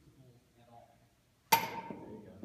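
A baseball bat hitting a ball off a batting tee: one sharp hit about a second and a half in, with a ringing ping that fades quickly.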